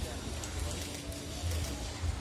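Indistinct voices in the background over faint music, with a steady low rumble.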